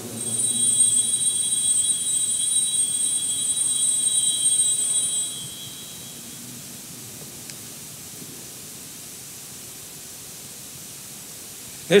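Altar bells rung at the elevation of the chalice after the consecration, a steady high ringing that lasts about five and a half seconds and then stops, leaving quiet church room tone.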